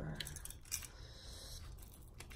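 A deck of oracle cards being shuffled and handled in the hands: a couple of sharp card snaps in the first second, then a soft sliding rustle of cards.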